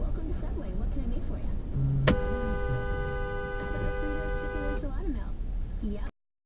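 Two-tone car horn held for almost three seconds, starting about two seconds in, over steady road noise inside a moving car: a horn blast at a Jeep that has cut in.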